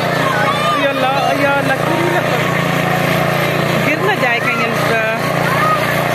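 Many children's voices, shouting and squealing excitedly, over a steady low motor hum. A few high squeals stand out about four to five seconds in.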